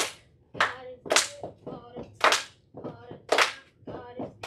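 Step-team routine: sharp hand claps and body slaps in a steady rhythm, about one every half second with every other hit louder, and short chanted voices between the hits.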